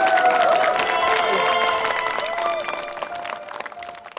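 A crowd of guests clapping, with music playing under it. The applause thins out and dies away near the end.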